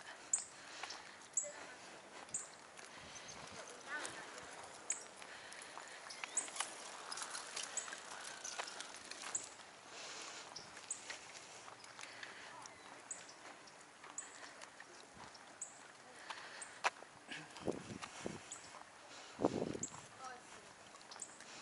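Footsteps on a paved asphalt trail, a soft tick about once a second, with faint voices of people passing near the end.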